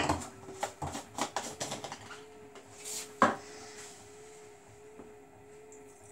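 Samsung WW11BB704DGW front-loading washing machine running its wash, the motor giving a steady whine as the drum turns. Laundry tumbles in the drum with scattered clicks and knocks in the first half, and one sharper knock about three seconds in.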